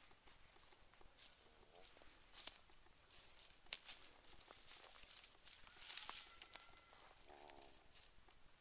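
Faint footsteps and rustling in dry leaf litter, with a stick swished through brushy cover and a couple of sharp snaps.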